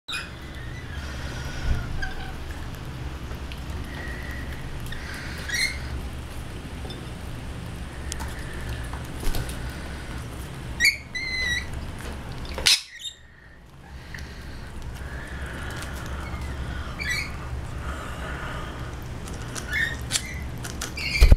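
Rainbow lorikeets feeding together, giving short, high, wavering chirps every few seconds over a steady low hum. A sharp knock comes about two-thirds of the way through.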